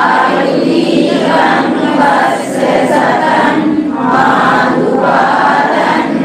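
Buddhist Pali chanting: voices reciting verses together in a steady, drawn-out melodic chant.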